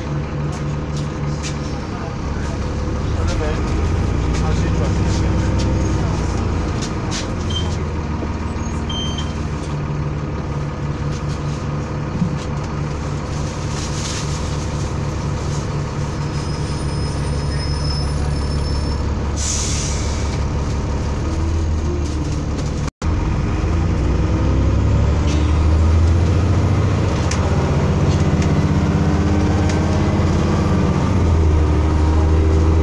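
Transbus ALX400 Trident double-decker bus heard from inside the passenger saloon while on the move: its diesel engine runs steadily, rising and falling in pitch several times through gear changes. A brief hiss of air comes about two-thirds of the way through.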